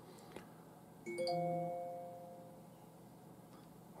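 A single chime about a second in: several bell-like tones sounding together, then fading away over about a second and a half.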